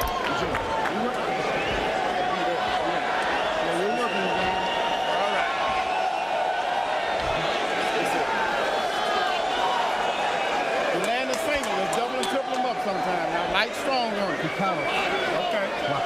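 Arena crowd noise between rounds of a boxing match: many indistinct voices talking at once, steady throughout, with a few sharp clicks late on.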